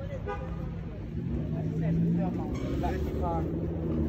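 A vehicle engine running close by, swelling for a second or so partway through, under the faint talk of people standing around.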